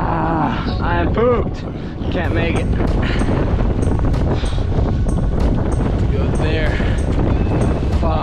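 Strong wind buffeting the microphone of a board-mounted camera over choppy water. Brief wordless vocal sounds rise and fall in pitch near the start and again later.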